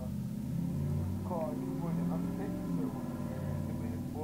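A man's voice, low and indistinct, over a voice call, with a steady low hum beneath it.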